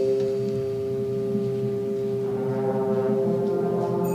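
Concert band holding a sustained chord, with brass prominent. About two seconds in, more instruments join on higher notes and the chord fills out.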